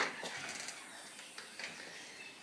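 A single sharp click, then low background noise with a few faint small sounds.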